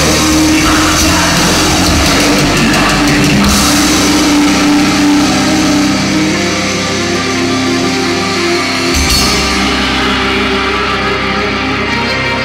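Live heavy rock band playing, with drum kit and cymbals driving under electric guitar and keyboards. The music eases slightly after the midpoint.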